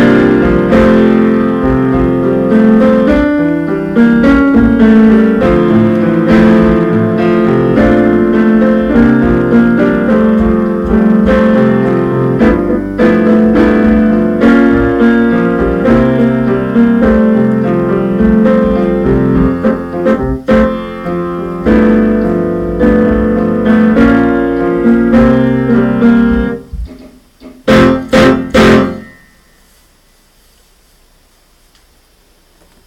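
Piano playing a continuous passage of notes and chords. Near the end it breaks off into three loud struck chords, then stops.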